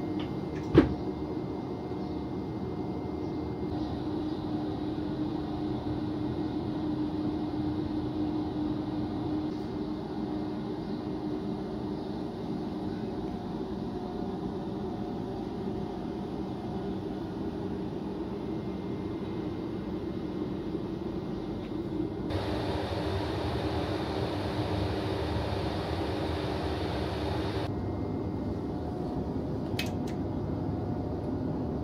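Steady hum of an electric multiple unit passenger car's onboard equipment, with a sharp knock about a second in. From about 22 to 28 seconds a louder rushing noise joins the hum, then cuts off.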